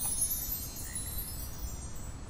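Soft, high chime tones ringing and slowly fading away, a shimmering sound-effect or music cue.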